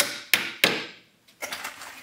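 Claw hammer driving four-penny nails through the wooden top bars of beehive frames: three quick, sharp strikes in the first second, each dying away fast, then a few softer knocks near the end.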